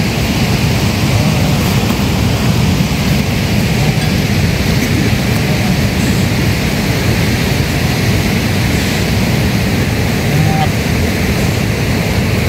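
Steady loud rushing noise outdoors, with a few faint short calls from a herd of sheep and goats moving through grass, about midway and again near the end.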